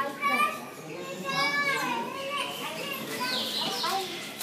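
Children's high-pitched voices calling and chattering, with one long wavering call about a second and a half in.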